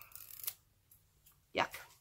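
Faint rustling and a light click as a lip liner pencil is handled, then near quiet, then a woman says "Yuck" near the end.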